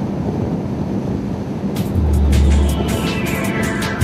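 Steady drone of a boat's outboard engine with wind noise, then background music with a heavy bass and regular drum hits comes in about halfway through and grows louder.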